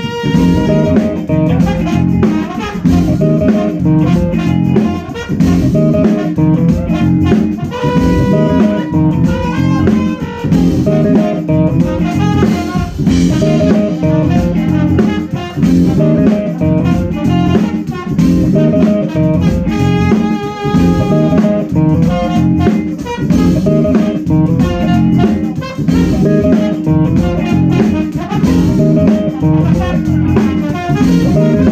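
Live funk band playing an instrumental groove: drum kit keeping a steady beat, electric guitar and organ playing over it.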